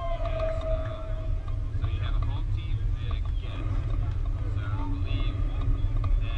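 Distant voices of softball players and spectators calling out, with one drawn-out call lasting about a second and a half at the start, over a steady low rumble of wind on the microphone.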